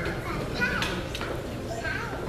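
Indistinct chatter of adults and children in a large hall, with a few sharp clicks.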